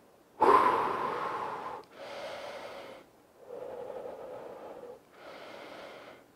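A man breathing deeply to catch his breath after a set of lunges: a loud blown-out "whew" exhale about half a second in, then three quieter, slower breaths in and out.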